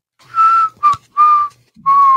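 A man whistling four short notes, each a little lower in pitch than the one before, the last held longest.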